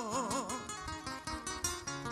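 Acoustic guitar picking the décima accompaniment between sung verses, with a wavering sung note trailing off in the first half-second.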